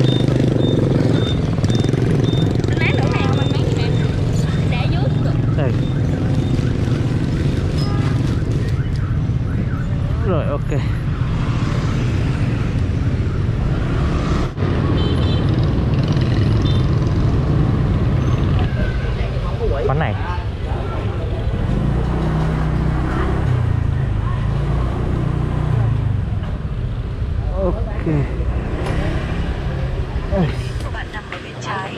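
Motorbike running while riding through dense city traffic: a steady engine hum mixed with the noise of surrounding motorbikes and cars.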